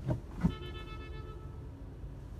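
A click about half a second in, then a single electronic tone lasting about a second, over the low steady idle of the car's engine inside the cabin.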